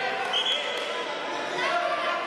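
Referee's whistle: one short blast about half a second in, over the hum of voices in a reverberant sports hall.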